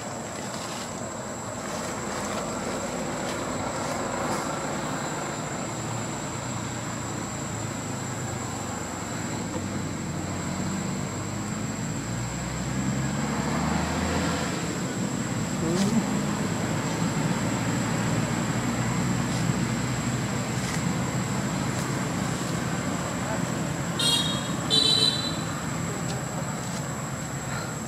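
Steady outdoor background noise with a constant thin high-pitched whine, a low rumble that swells in the middle, and two short high chirps near the end.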